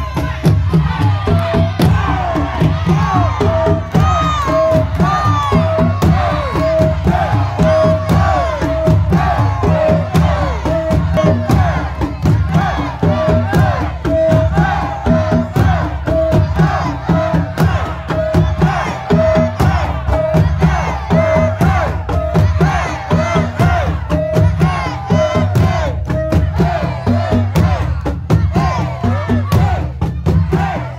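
A bedug drum ensemble pounding out a continuous rhythm, with many performers' voices shouting and chanting over the drums.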